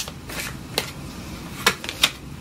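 A deck of tarot cards being shuffled and handled by hand: soft card rustling with several sharp snaps of the cards.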